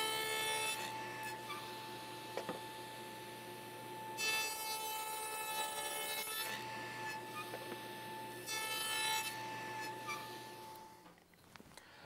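Table saw with a dado blade cutting tongues on the ends of wooden tray pieces: three short cutting passes over the steady whine of the spinning blade. The saw noise falls away near the end.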